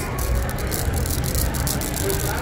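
Shop background music over a steady murmur of a busy store, with light rattling and handling noise from a plastic dome-lid tumbler held close to the microphone.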